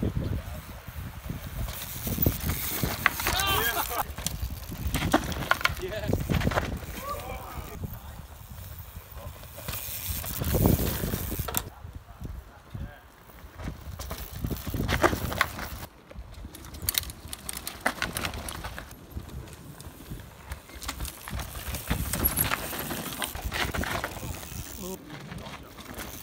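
Mountain bikes sliding through a loose dirt corner one after another, the tyres skidding and scrubbing through the soil as the bikes rattle. Each pass swells and fades, with short shouts from onlookers in between.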